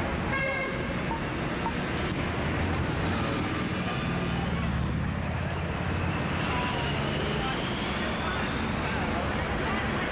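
Outdoor city ambience: a steady hum of traffic with indistinct voices of passersby.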